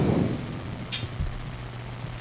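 Pause in a room full of live microphones: a steady low electrical hum with faint hiss and a thin high whine, and one brief soft hiss about a second in.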